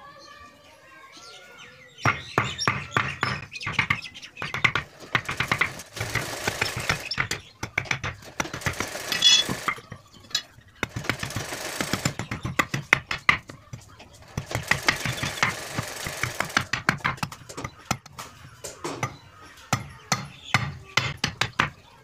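A steel blade chopping rapidly at the end of a green wooden stick on a wooden plank, carving the point of a spinning top: quick repeated strikes, several a second, in bursts with short pauses, starting about two seconds in.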